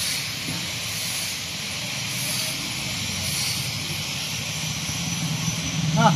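Outdoor street ambience: a steady hiss with a low engine hum that grows slightly louder toward the end.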